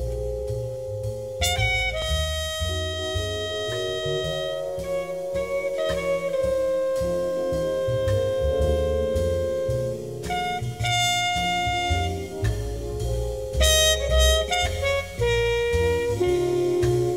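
Instrumental background music: long held melody notes over a bass line and beat.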